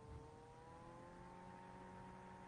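Near silence: faint room tone with a steady hum that rises slightly in pitch about half a second in.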